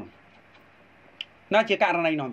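A voice speaking: it stops, leaving about a second and a half of faint hiss broken by one sharp click, then starts again.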